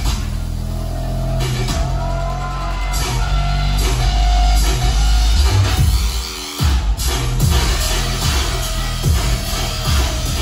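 Loud live dubstep from a DJ set played over a club PA, with heavy sustained bass and a gliding synth tone. The bass cuts out briefly a little past halfway, then the track comes back in with a regular beat.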